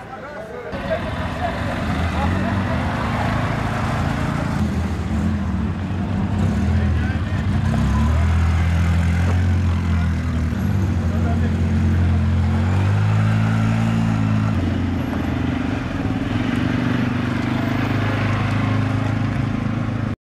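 Engines of mud-caked side-by-side UTVs running as they pull away at low speed, their pitch stepping up and down, with crowd voices behind.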